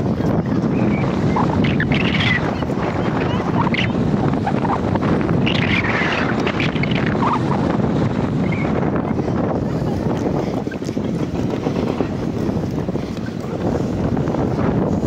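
Wind buffeting the microphone: a loud, steady low rumble. Brief faint voices break through about two and six seconds in.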